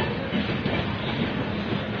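Express train coaches rolling past a platform. Their wheels make a steady rumble on the rails, with rapid, irregular knocks running through it.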